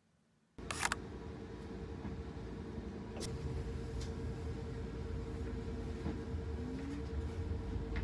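Near silence, then, just over half a second in, the sound cuts in to the cabin noise of a moving city public transport vehicle: a steady low rumble with a constant hum and scattered light rattles. There is a brief burst of clicks where the sound begins.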